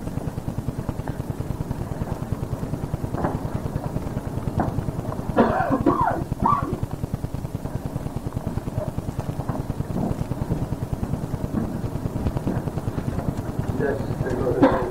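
A pause in a man's talk on a digitized old cassette recording. A steady, low, fast-pulsing hum runs underneath, and a short voice sound comes about five and a half seconds in.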